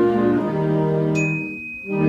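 Concert band with saxophones holding sustained chords. About a second in, the band sound drops away and a single high ding rings on its own until the music returns.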